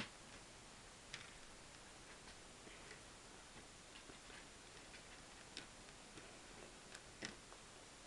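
Faint, scattered clicks of small plastic Lego bricks being handled and pressed into place, over near silence.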